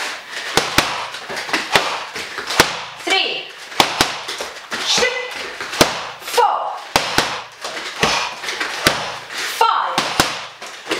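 Boxing gloves, knees and elbows striking Thai pads: a run of sharp slaps, two or three a second, in repeated one-two-knee-elbow combinations, with short calls from a voice between them.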